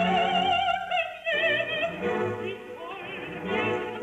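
Recorded opera: a singer with a wide vibrato over orchestral accompaniment, holding one high note for about the first second before moving on to further phrases.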